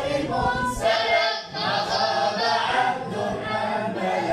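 Boys' choir singing madih, devotional praise of the Prophet, together and unaccompanied.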